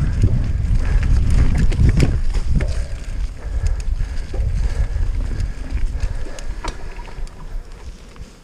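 Norco Range 29 C3 mountain bike running down a dirt forest trail: wind buffeting the helmet-camera microphone over the rumble of the tyres, with scattered sharp rattles and knocks from the bike. The noise fades over the last couple of seconds as the ride slows.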